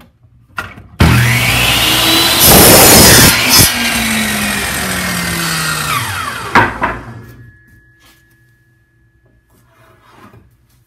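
Hitachi compound miter saw started about a second in, its blade cutting through a wooden board, loudest for about a second during the cut. The motor runs on, then winds down with a falling whine after the trigger is let go, with a knock as it slows.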